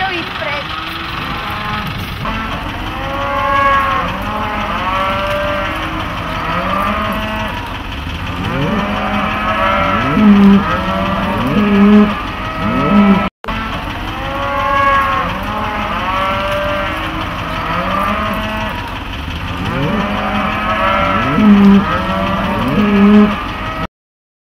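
Cattle mooing, many calls overlapping one another, with the loudest low calls about ten seconds in and again near the end.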